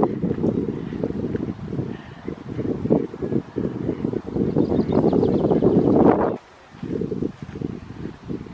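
Wind buffeting the microphone: a gusty low rumble that drops away suddenly about six seconds in.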